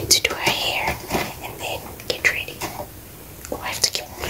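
A woman whispering to the camera, breathy speech with no voiced tone.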